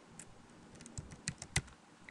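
Computer keyboard being typed on: a quick, irregular run of faint key clicks as a string of digits is entered, the loudest about a second and a half in.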